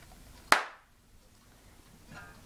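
A single sharp hand clap about half a second in.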